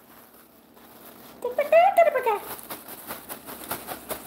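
A short burst of a woman's voice, then a clear plastic bag crinkling as it is handled: a quick run of small crackles through the second half.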